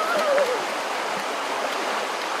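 Running water from a forest stream, an even, steady rush. In the first half second a short wordless voice sound slides down in pitch.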